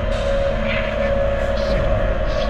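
End-credits soundtrack drone: one steady held tone over a low rumble, with a few short brighter flutters above it.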